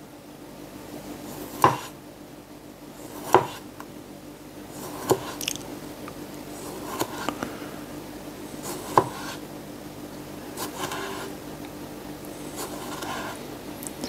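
A Damascus steel chef's knife slicing cherry tomatoes on a plastic cutting board. Each stroke ends in a sharp tap as the edge meets the board, about every two seconds, with soft slicing and scraping between taps.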